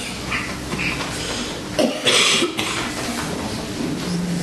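A person coughs once, about two seconds in, over a steady low hum in the hall, with a few small brief sounds before it.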